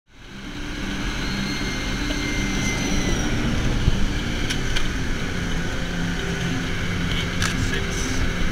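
Music with a stepping bass line over steady vehicle noise from a chase car speeding down the runway under a landing Lockheed U-2, fading in at the start. A high whine is heard for the first three seconds or so.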